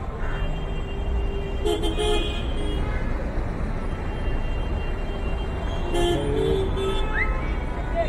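Busy road traffic running with car horns tooting in short bursts, one cluster about two seconds in and another about six seconds in, over a steady low rumble of engines and tyres.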